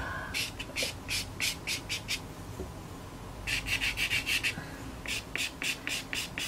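Pastel pencil scratching across sanded pastel paper (Fisher 400) in short quick strokes, about four a second. The strokes come in three runs, with a pause of about a second a little past the middle.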